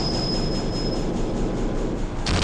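Loud continuous rumbling noise with a thin, steady high whine that fades out about a second in.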